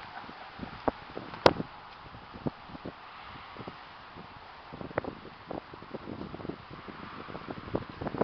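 Footsteps through grass while walking, irregular soft knocks, with wind on the microphone and one sharp click about a second and a half in.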